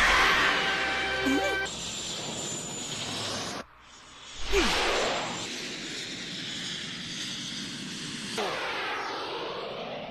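Anime soundtrack of a fast chase: rushing whoosh effects over music, with brief shouting. The sound drops out sharply a little under four seconds in, then swells back.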